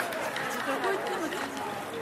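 Indistinct chatter of several voices over outdoor street noise, with scattered light clicks; it starts fading out near the end.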